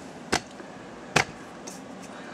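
Two short, sharp clicks a little under a second apart.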